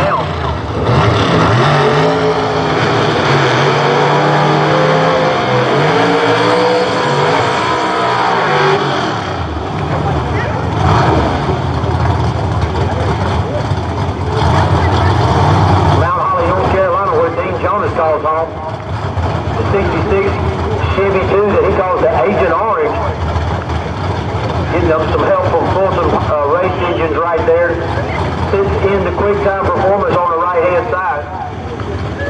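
Vintage gasser drag cars' V8 engines revving hard at the starting line. The pitch sweeps up and down in repeated blips over the first several seconds, then gives way to rougher, steady engine noise mixed with a voice.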